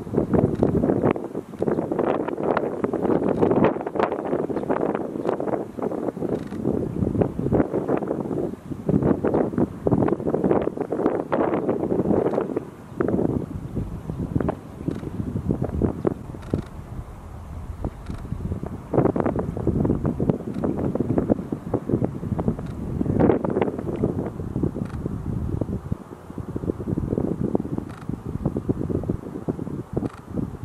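Wind buffeting the microphone, a loud, gusty rumble that surges and drops every second or so.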